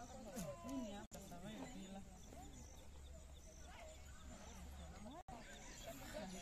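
Faint, distant voices talking outdoors, with a short high chirp repeating about once a second. The sound drops out for an instant twice.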